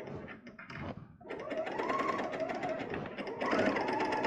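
Bernina L460 serger starting about a second in and stitching a four-thread overlock over piping cord. Its motor speeds up and eases off, then runs steadily and a little louder near the end.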